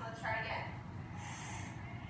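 A person's voice speaking briefly, then a short breathy hiss a little after the middle, such as a sharp exhale through the nose.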